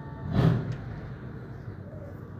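Garbage truck running with a low rumble, and one short loud bang about half a second in, followed by a small click.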